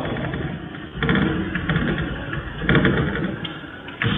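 Chalk scratching and tapping on a blackboard as a sentence is written by hand, over a steady low background hum.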